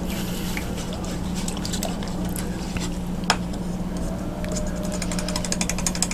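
Paintbrush being cleaned in a water container, with scattered light clicks, one sharper click midway and a quick run of light clicks near the end, over a steady low hum.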